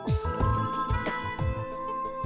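A mobile phone ringtone melody plays over background music that carries a steady beat of low drum hits, about three a second.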